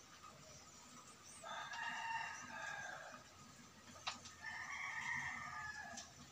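A rooster crowing twice, each crow about a second and a half long, with a short sharp click between the two crows.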